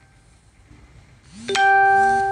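A single bell-like chime about one and a half seconds in: a clear pitched ding that starts suddenly and rings, fading away over about a second and a half.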